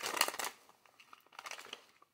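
A plastic pipe-tobacco pouch crinkling as it is handled: a quick burst of crackles, then a few fainter crinkles near the end.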